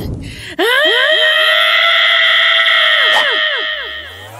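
A long, steady, high-pitched scream held for about three seconds by a cartoon character, with a run of short falling swoops in pitch beneath it.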